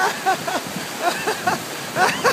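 A man laughing heartily in quick voiced 'ha-ha' pulses, about four a second, over the steady rush of river rapids.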